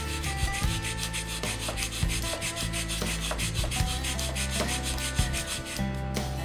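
Cuttlefish bone rubbed back and forth on a flat stone in quick, regular scraping strokes, grinding its face down flat to make a casting mold. Guitar music plays underneath.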